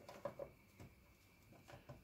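Near silence, with a few faint soft taps of a doll being pushed against a plastic toy bunk bed.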